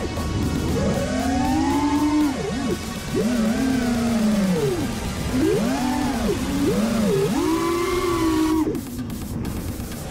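FPV quadcopter's electric motors whining, the pitch swooping up and down in second-long surges as the throttle is punched and eased through flips, with a brief drop near the end.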